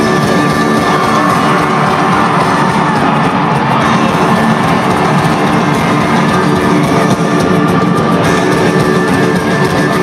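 Loud heavy rock music filling an arena, with electric guitar and drums, over a cheering crowd. It is the opening song of a rock concert just getting under way.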